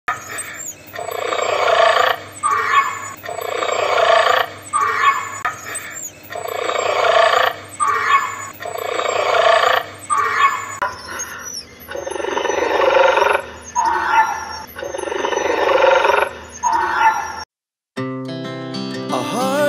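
Raptor dinosaur roar sound effect repeating about every two seconds: a long roar that builds up, followed by a couple of short calls. The loop changes slightly about eleven seconds in and cuts off suddenly just before the end.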